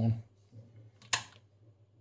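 One sharp click about a second in: the front-panel lever switch of a 1961 Rohde & Schwarz ESM 300 valve receiver being turned from its off position to switch the set on.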